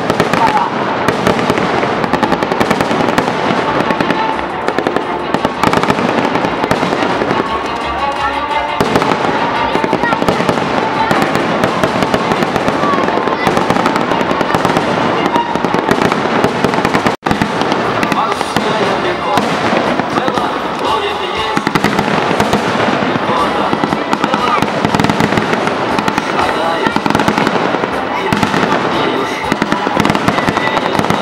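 Staged battle demonstration: a dense, continuous crackle of rapid gunfire and pyrotechnic bangs, with music underneath. It cuts out for an instant about seventeen seconds in.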